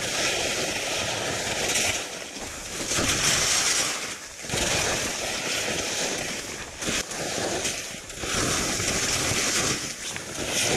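Skis carving turns on soft snow: a hissing scrape that swells with each turn, about four times, and eases between turns. Wind rumbles on the body-mounted action camera's microphone underneath.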